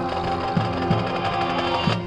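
Marching band playing a loud held chord over low drum hits. The chord cuts off sharply near the end.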